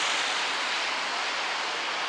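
Steady, even hiss of city street noise with no distinct events.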